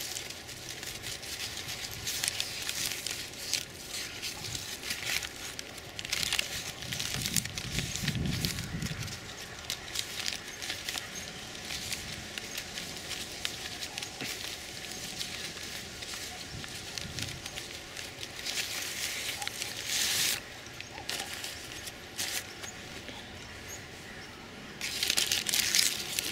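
Japanese apple bags (paper fruit-protection bags) crinkling and rustling as hands work them off apples on the tree. There are louder crackling bursts every few seconds as the paper is pulled and crushed.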